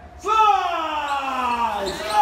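A voice singing one long 'daaa' that slides steadily down in pitch, starting about a quarter second in and fading near the end.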